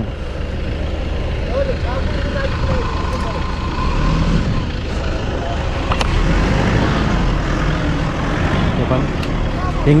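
A pickup truck's engine running steadily while the vehicle sits stuck in soft sand, with men's voices calling in the background.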